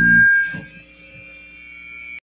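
Loud music with steady low tones stops abruptly about a quarter of a second in. A faint hum with a few thin steady tones and a single click follows.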